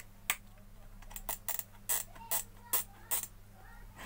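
About eight sharp, irregular plastic clicks from a repaired Wipro electric dry iron being switched on and its temperature dial turned while it is tested for heating.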